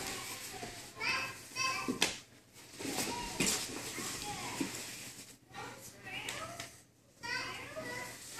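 Children's voices chattering and calling in the background of a room, with a couple of sharp thuds from bodies moving on the mats about two and three and a half seconds in.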